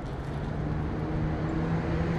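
Steady road traffic noise, a low rumble with a faint steady hum running through it.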